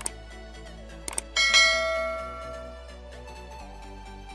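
Subscribe-button sound effect: mouse clicks at the start and again about a second in, then a bell chime that rings out and fades over about a second and a half. Quiet background music runs underneath.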